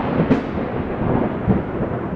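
Thunder rumbling and rolling, with a sharp crack about a third of a second in and a swell of low rumble about a second and a half in.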